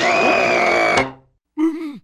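Cartoon sound effect of a taut rope twanging like a plucked string as it springs straight. It starts suddenly and rings for about a second before fading, and a short vocal cry follows near the end.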